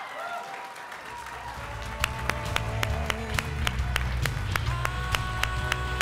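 Audience applause for an announced award winner. A walk-up music track comes in over it: a bass line about a second in, then a steady drum beat and melody about two seconds in.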